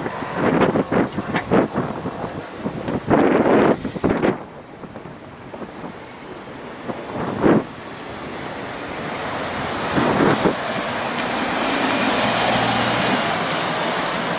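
MAN Lion's City city bus driving slowly toward the microphone and past it, its engine and tyre noise swelling steadily and peaking a couple of seconds before the end. Wind gusts buffet the microphone in irregular bursts during the first few seconds.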